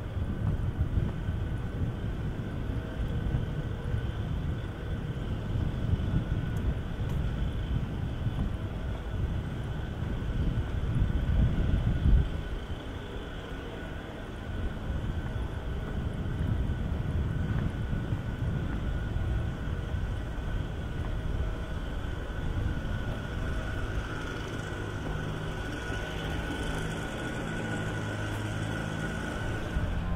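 Quiet city street ambience with a low rumble of distant traffic. The rumble is loudest for the first twelve seconds, then drops suddenly to a softer hum, and a faint steady high tone grows in the second half.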